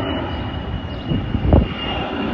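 Road traffic noise: a steady low rumble with a brief louder swell about one and a half seconds in, and a faint steady high-pitched whine above it.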